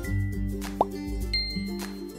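Light background music, with a single short pop sound effect that slides upward in pitch a little under a second in.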